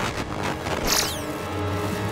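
Cartoon soundtrack of background score music with a short sound effect about a second in: a bright high burst with falling whistling tones. A low steady hum follows it.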